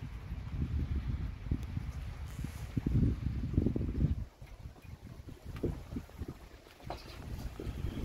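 Wind buffeting the phone's microphone: an uneven low rumble, strongest for the first four seconds, then dropping to fainter, intermittent gusts.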